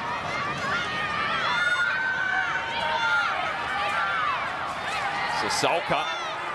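Stadium crowd shouting and cheering, many voices overlapping, in reaction to a heavy tackle.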